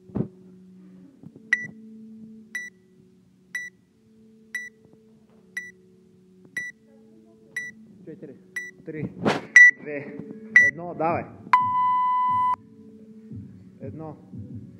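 Workout countdown timer beeping: about ten short high beeps, one a second, then a single longer, lower beep lasting about a second that signals the start of the workout. Voices come in briefly around the last few beeps.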